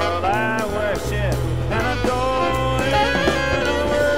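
Live jazz ensemble playing: a saxophone melody with pitch bends and a long held note in the second half, over a moving bass line and cymbals.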